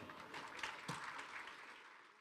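Faint applause from an audience, a dense patter of claps fading out.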